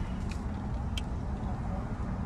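Steady low rumble of a car idling, heard from inside the cabin, with one faint click about a second in.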